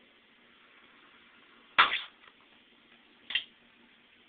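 A 1,300 µF, 63 V electrolytic capacitor, submerged in a water-filled plastic bottle, blows out with one sharp, loud bang about two seconds in. A second, smaller pop follows about a second and a half later. It blew quick and violently.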